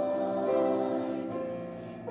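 Mixed church choir singing sustained notes in harmony, the phrase tapering off near the end.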